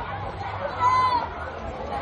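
Chatter of a group of people talking over one another, with one voice calling out louder about halfway through.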